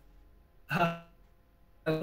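A man's brief voiced sound, one short hesitation syllable lasting under half a second, about two-thirds of a second in. Speech resumes right at the end.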